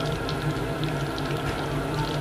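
Chicken skins deep-frying in hot oil in a stainless steel pan: a steady sizzle with small scattered crackles.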